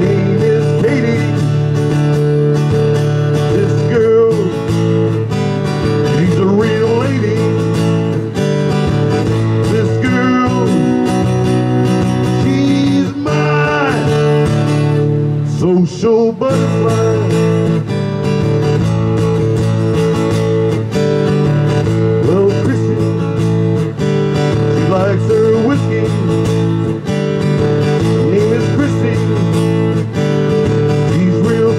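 Acoustic guitar playing a song, heard through a small portable amplifier; the playing thins out briefly about halfway through.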